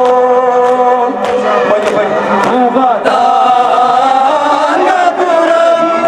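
Men chanting a noha, a Shia lament, in long held notes through handheld microphones, with sharp open-hand chest-beating slaps (matam) from the crowd at intervals.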